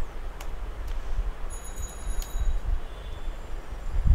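A few computer keyboard keystroke clicks over a steady low rumble of background noise, with a brief faint high whine near the middle.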